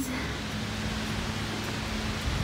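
Steady rushing noise of the outdoor surroundings, even and unbroken, with a faint low hum under it.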